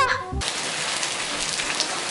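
Steady rain falling on paving and gravel, an even hiss that starts abruptly just after the beginning.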